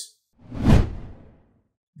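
Whoosh transition sound effect that swells up and fades away within about a second.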